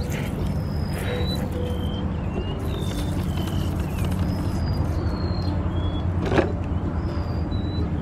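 Small birds chirping in short, high notes over a steady low hum, with one sharp click about six seconds in.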